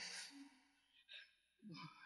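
A woman's faint sigh, fading within half a second, then near silence.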